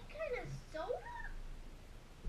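A cat meowing twice, two short calls that rise and fall in pitch, the second higher than the first.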